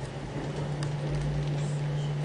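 A steady low hum over an even background of noise.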